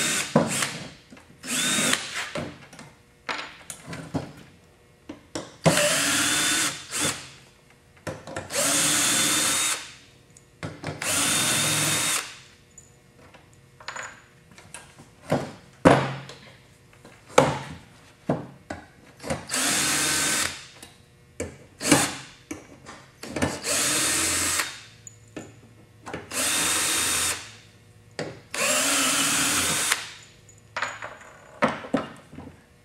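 A cordless drill with a quarter-inch nut driver bit backs old screws out of a gas forge door. It runs in about eight short spurts of a second or so, each rising in pitch, with knocks and clicks from handling the door between them.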